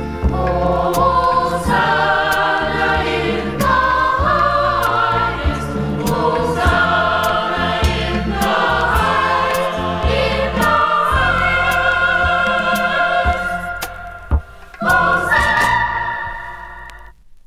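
A mixed choir sings a Caribbean-style Mass setting to a band accompaniment. Near the end the phrase closes on a held chord.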